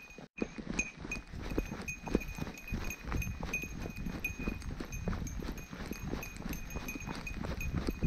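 Footsteps crunching and scuffing down a trail of dry fallen leaves, with a small bell jingling in time with the steps.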